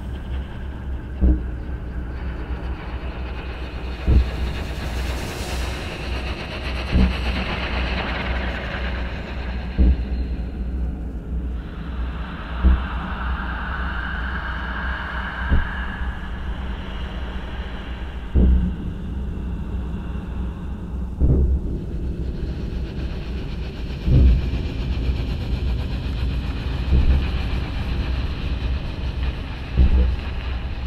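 Live electronic synthesizer music: a steady low rumbling drone with a deep thump about every three seconds, under shifting hissing layers that swell in the middle.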